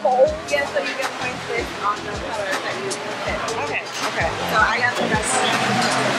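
Ambient noise of a busy bar: indistinct voices and background music over a steady rushing hiss.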